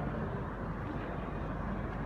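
Steady, even background noise of an airport terminal concourse.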